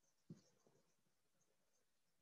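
Near silence: faint room tone, with one faint short click about a third of a second in.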